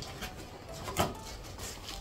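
Cardboard packaging and plastic wrap being handled as a blender's glass jar is unpacked from its box, with one sharp knock about a second in.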